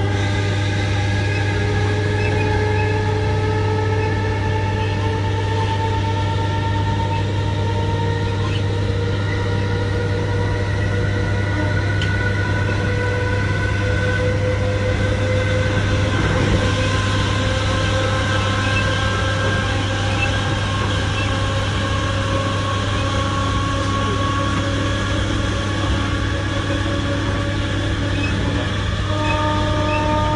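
Interior of a British Rail Class 317 electric multiple unit running at speed: a steady rumble of wheels on track under a constant low hum, with a whine of several tones that slowly rise in pitch.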